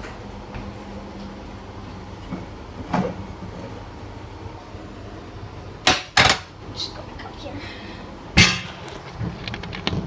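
Kitchen things being handled: sharp knocks and clatters, a pair about six seconds in and the loudest about two seconds later, then a run of small clicks, over a steady low hum.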